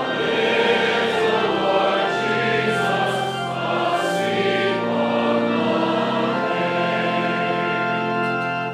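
Congregation singing a hymn together, a steady flow of held, sung notes.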